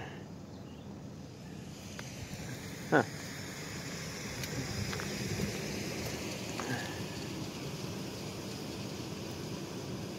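Steady outdoor background noise: a faint even hiss that swells a little in the middle, with a few faint clicks.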